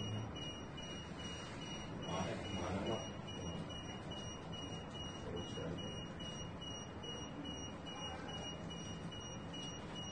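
An electronic alarm beeping over and over in a steady, even pattern of high-pitched tones.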